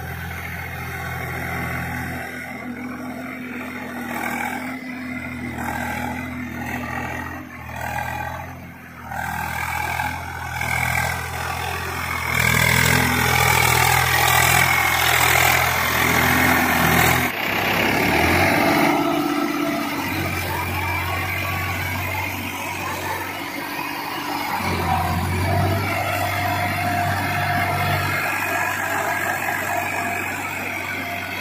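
Swaraj 744 FE tractor's diesel engine running under load as it drives a rotavator through wet paddy-field soil. It gets loudest as the tractor passes close around the middle, then the level drops suddenly and a tractor engine keeps running steadily.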